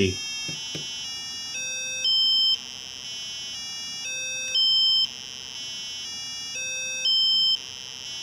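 Small speaker driven by an Arduino playing buzzy electronic tones of the note C, stepped up an octave about every half second by a timer interrupt through five octaves, then dropping back to the lowest. The cycle runs three times, and the top note of each cycle is the loudest.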